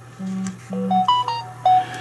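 A short electronic tune of quick clean beeps stepping up and down in pitch, like a phone notification tone, about a second in. It comes just after a low hummed "mm-hmm", over a faint steady electrical hum.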